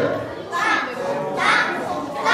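Many children's voices chanting together in a large hall, in short repeated syllables.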